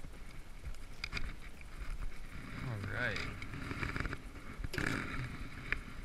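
A man's drawn-out exclamation about halfway through, over a steady low wind rumble on the camera's microphone, with a few short handling clicks and a breathy burst near the end.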